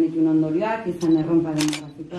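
A woman speaking without a pause into a headset microphone.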